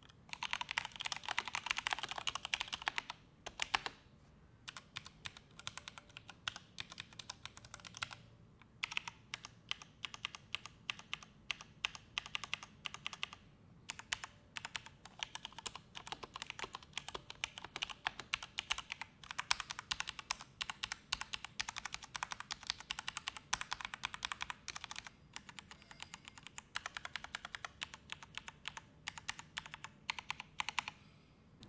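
Typing on a Mountain Everest Max mechanical keyboard with Cherry MX Red linear switches: rapid runs of key clacks broken by brief pauses of under a second.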